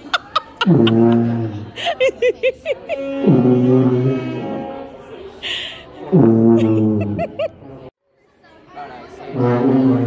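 A tuba blown by a beginner: low held notes of about one to two seconds each, three in a row, each starting with a short downward slide in pitch.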